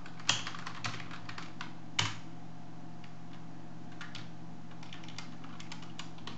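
Typing on a computer keyboard: scattered key clicks, two of them louder strikes a little under two seconds apart. A steady low hum runs underneath.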